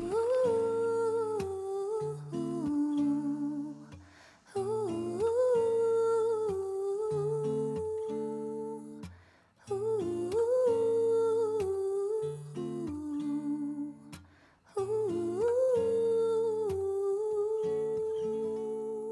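A woman humming a wordless melody live over guitar chords, the same short phrase repeated four times with brief breaks between.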